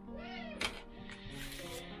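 Soft background music. Over it, a sterile swab is drawn from its paper-backed packet: a sharp click just over half a second in, then a brief crinkling rustle about one and a half seconds in. Near the start there is also a short animal-like call that rises and then falls.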